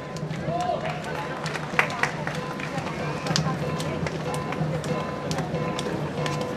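Lion dance percussion band playing a soft passage: scattered light sharp taps over a steady ringing tone, with voices in the hall.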